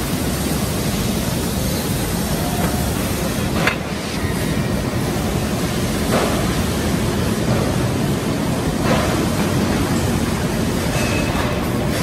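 Steady factory-floor noise from a tractor assembly line, with a few short metal knocks, about four, six and nine seconds in.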